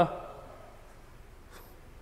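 Quiet room tone in an empty, hard-tiled room: the echo of a man's voice dies away in the first half second, leaving a faint steady hiss.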